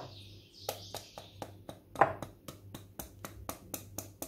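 Metal hand-mixer beaters clicking as creamed butter and sugar is scraped off them with a silicone spatula: a quick run of light clicks starting about a second in and getting faster, with one louder knock midway.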